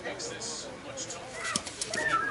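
Indistinct voices of people talking in the background, with a few sharp clicks about a second and a half in.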